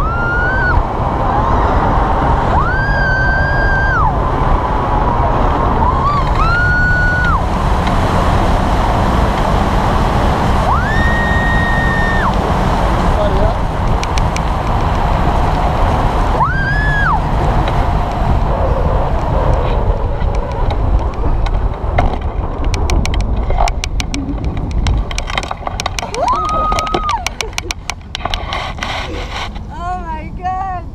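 Strong wind rushing over the microphone in flight, a loud steady noise heaviest in the low end. Over it, several long high tones each rise, hold for about a second and drop away. In the last third the wind eases and a run of rapid sharp clicks or crackles sets in.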